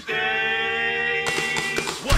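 Comedy-metal song playing back: a sustained vocal harmony, several voices holding one steady chord for nearly two seconds, then cut off abruptly as playback stops.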